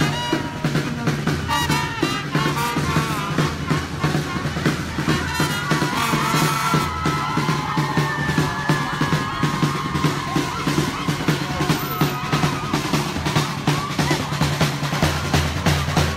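Marching drum band playing a steady, even beat on large drums, with a melody carried over the drums.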